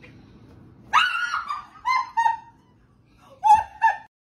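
A woman's startled scream from a jump scare: a sudden high-pitched shriek about a second in, falling in pitch, followed by shorter shrieking cries.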